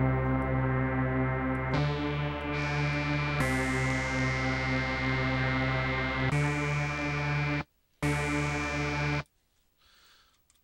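A synthesized trance lead built from stacked, detuned sawtooth oscillators in Reason's Thor and Malström synths plays five held notes. Its tone turns brighter and duller from note to note as the waveshaper overdrive is switched on and off. There is a short break near the end, and then the sound stops.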